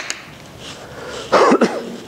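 A man coughs, a loud double cough about one and a half seconds in, after a short sharp click at the start.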